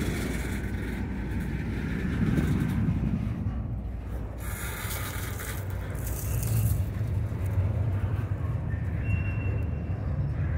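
Double-stack intermodal train's well cars rolling past close by, a steady low rumble of steel wheels running on the rails.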